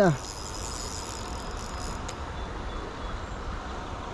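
Steady, even hiss of river water and open-air background, with the tail of a shouted word at the very start.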